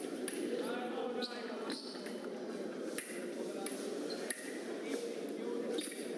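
Several sharp metallic clicks scattered through, from foil blades meeting during a fencing bout, over a murmur of voices in a large hall.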